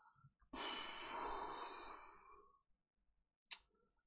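A man sighs: one long breath out, starting about half a second in and fading away over about two seconds. A short click follows near the end.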